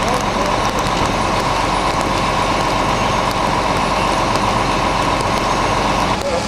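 Fire apparatus engine and pump running steadily, a dense unbroken noise with a constant high whine.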